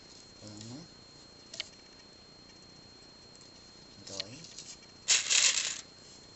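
Loose pearl beads rattling in a plastic tray as a hand picks through them: one short burst near the end, the loudest sound here, with a soft click earlier.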